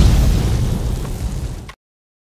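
A loud explosion sound effect for an animated logo intro: a deep boom that fades and then cuts off suddenly near the end.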